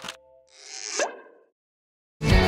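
A short logo sound effect: a swelling whoosh that rises in pitch and ends in a pop about a second in, just after the last note of the jingle music dies away.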